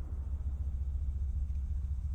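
Steady deep rumble from a film soundtrack's sound design. The fading tail of a blast dies away in the first moment.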